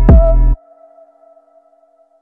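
Electronic background music with a heavy beat and a steady synth note, which cuts off suddenly about half a second in, leaving only a faint held tone that dies away.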